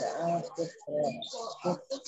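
Indistinct voices over the video call: short murmured syllables and sounds of assent that the recogniser did not write down.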